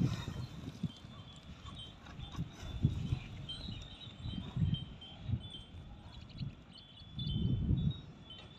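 Water buffalo bull goring and digging into an earth bank with its horns: scattered dull thuds of hooves and soil, with a louder low burst lasting under a second near the end.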